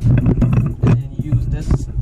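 A few sharp metal clicks as an open-ended wrench and a socket are fitted onto the top nut of a shock absorber, over a steady low hum.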